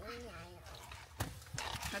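A woman's short appreciative 'mmm' while tasting a sip of iced coffee, followed by a click and light clicking, smacking mouth sounds.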